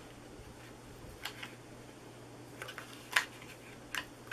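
Soft rustles and taps of cardstock being folded up and pressed together by hand into a small box, with a sharper tap about three seconds in, over a faint steady hum.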